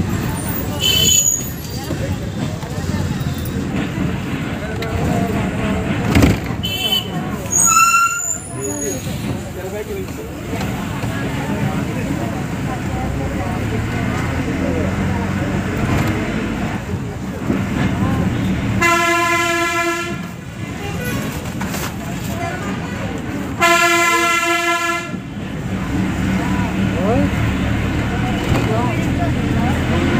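Bus engine running with road noise inside the moving bus, and a horn blown twice in long blasts of about a second and a half, a few seconds apart, in the second half. Shorter, higher toots from horns sound in the first third.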